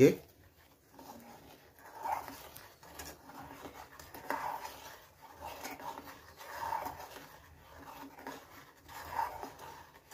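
Metal spoon stirring milk in an aluminium pot to dissolve sugar, quiet scraping strokes that swell about every two seconds.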